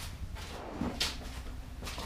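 Grey plastic worm bin being moved and set down on a newspaper-covered surface: a few faint, short scrapes and light knocks of plastic, about a second apart.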